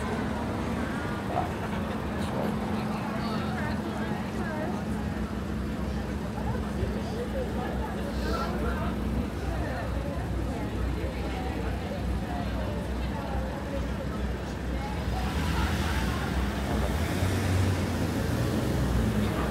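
Busy street ambience: road traffic running past with passers-by talking. A steady low hum stops about halfway through, and a passing vehicle grows louder near the end.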